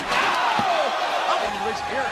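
A heavy body slam onto the ringside floor right at the start, followed by loud arena crowd noise with a man's voice calling out over it.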